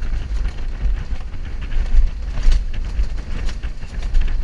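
A rail-guided bobsled (mountain coaster) running fast down its steel tube track: a continuous heavy rumble of the wheels with irregular rattles and clacks, and wind buffeting the microphone.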